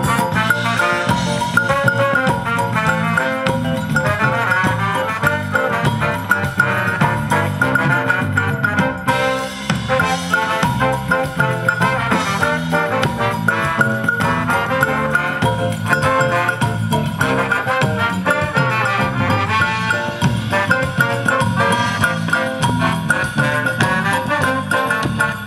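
Live band with a horn section of saxophone, trumpet and trombone playing an upbeat number over drum kit, congas and electric guitar.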